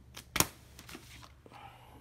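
12-inch vinyl records being flipped through in a plastic crate: one sharp knock less than half a second in, then a few soft taps and sleeve rustles.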